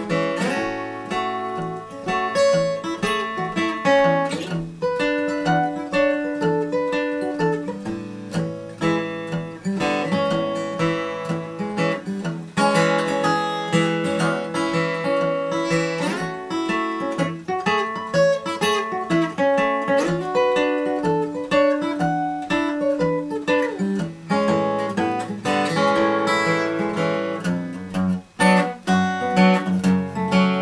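Solo fingerstyle steel-string acoustic guitar, a Martin dreadnought, played continuously: a steady bass line under picked melody notes in a shuffle rhythm.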